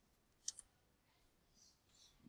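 Near silence with a single faint click about half a second in, followed by a fainter one: computer keyboard keystrokes while typing code.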